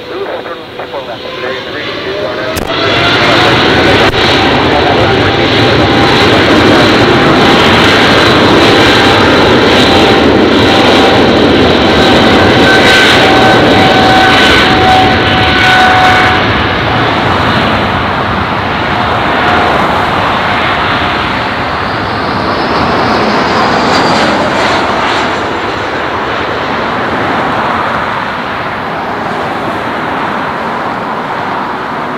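Boeing 777's twin turbofan engines spooling up, with a rising whine about two seconds in, then running loud at takeoff thrust through the takeoff roll. The noise eases after about sixteen seconds as the jet moves off down the runway.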